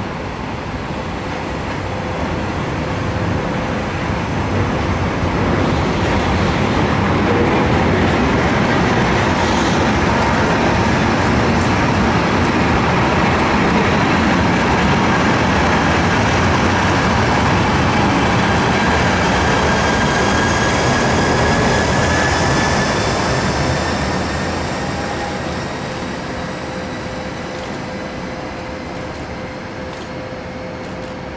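Freight train of tank-container wagons rolling past on the rails, with its BLS Re 425 electric locomotive pushing at the rear. The sound swells in the first few seconds, holds steady, and fades away near the end as the locomotive goes by.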